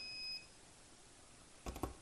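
A timer's steady high-pitched beep, marking the end of the jelly's one-minute boil, cuts off about half a second in. Near the end come two or three quick knocks as the stainless saucepan is moved and set down on the glass-top electric stove.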